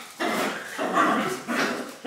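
Two pet dogs playing rough with each other, giving a few short barks and yips.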